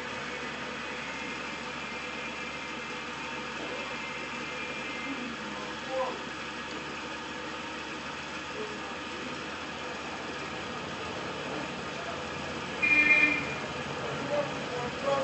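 Steady background noise of an outdoor ambience, with faint distant voices, and a short louder sound about a second before the end.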